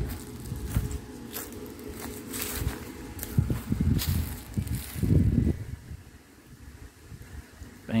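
Footsteps crunching over dry leaves and grass, with an uneven low rumble that is loudest around the middle and eases off near the end.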